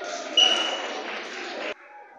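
A single short whistle blast, one steady high note about half a second long, over background chatter. The sound cuts off abruptly near the end.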